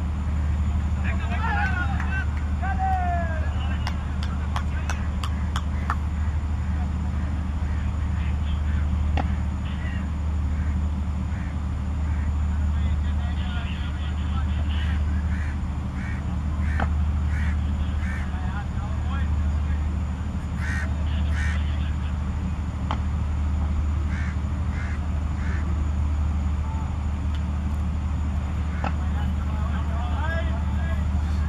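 Outdoor field ambience: a steady low rumble underneath, with faint distant voices calling in the first few seconds and scattered faint short calls and clicks afterwards.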